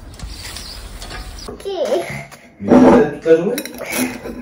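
A metal gate's tubular latch handle is worked and the gate is moved, giving a mechanical rattle and wavering, gliding creaks, loudest nearly three seconds in.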